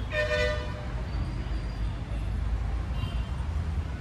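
A vehicle horn toots once briefly at the start, over a steady low rumble of background traffic.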